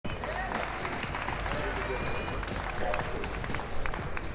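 Reverberant sports-arena background: scattered distant voices and background music, broken by frequent short clicks and knocks.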